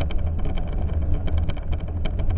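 Bicycle tyres rolling over packed snow, picked up by a handlebar-mounted camera: a steady low rumble with many quick, irregular crackles and ticks.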